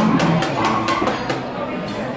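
Small mallet tapping on the hard crust of a dish served at the table: a quick series of sharp knocks in the first second and a half, over restaurant chatter and background music.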